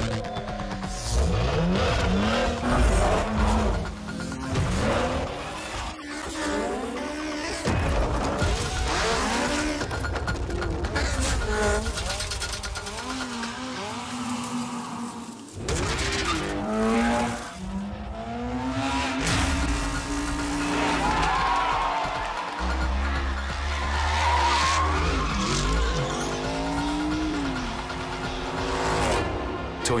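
Several motor vehicle engines revving hard and sweeping past one after another, with tyre squeal and skidding, set against a music track.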